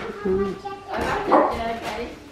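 A dog barking among voices, loudest about a second and a half in.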